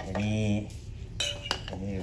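A metal spoon clinking twice against a metal footed cup, two sharp strikes about a second in, a third of a second apart.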